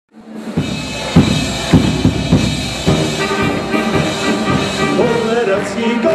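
Band music at a folk feast: drum beats about twice a second under held chords, with singing coming in about five seconds in.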